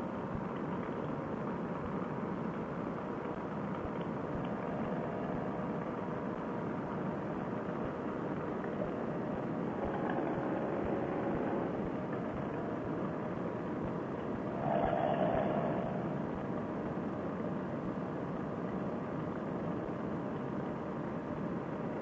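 Paramotor trike's engine and propeller running steadily in flight, picked up through a Bluetooth headset microphone, with a brief louder stretch about fifteen seconds in.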